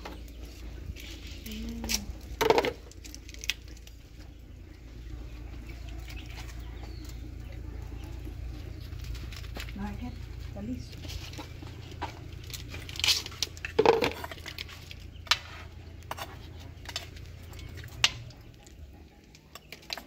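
Outdoor wood-fire cooking at a cast-iron pot: scattered sharp clicks and knocks, the loudest about two and a half seconds in and around thirteen to fourteen seconds in, over a steady low rumble. A few short low vocal sounds come near the start and around ten seconds in.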